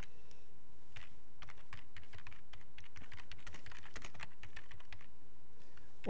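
Typing on a computer keyboard: a quick, uneven run of key clicks, sparse at first and dense from about a second in until shortly before the end.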